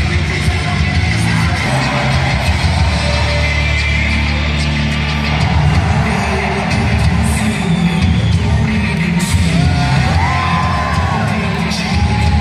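Wrestler's rock entrance music playing loudly over the arena PA, with a heavy bass line, while the crowd yells and cheers over it.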